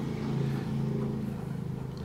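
A steady low hum made of several pitched layers, like an engine or motor running.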